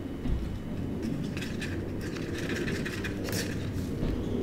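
Faint scraping and tapping of a stir stick in a cup as pigment paste is mixed into epoxy resin, over a steady low rumble.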